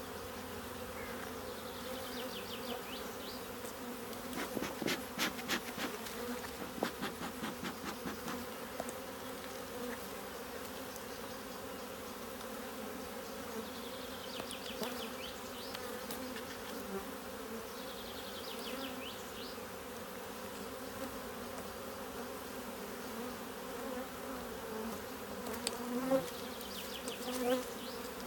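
Honeybees humming steadily around an open hive. About four to nine seconds in, a metal hive tool scrapes and clicks against the wooden frames, cleaning off wax bridges built between them.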